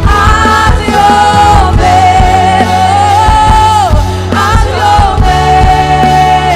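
Live worship band playing a slow Spanish-language Christian song: a lead vocalist sings long held notes over bass, regular drum hits and electric guitar.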